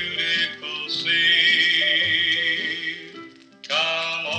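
A 1950s country 45 rpm record playing on a turntable: music with long held, wavering notes, which drops away briefly near the end before it comes back in.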